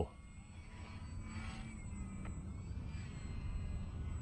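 Faint, distant hum of a small electric RC airplane's brushless outrunner motor and propeller in flight, growing slightly louder, over a low rumbling background.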